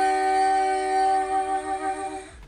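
Hummed vocal notes recorded into the Specdrums app, played back together as one sustained chord triggered by the finger rings on the coloured pads. The chord holds steady on several pitches at once with no change in pitch.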